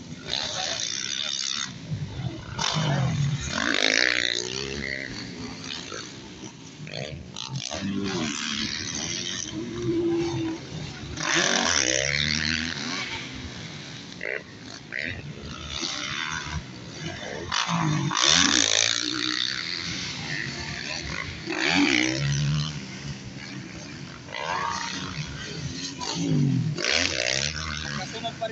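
Motocross dirt bike engines revving hard as riders race and take jumps, the pitch climbing and dropping again and again, with several louder swells as bikes pass close.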